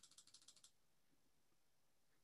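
A quick run of faint, even clicks, about a dozen a second, stopping about two-thirds of a second in: a computer mouse's scroll wheel ticking notch by notch.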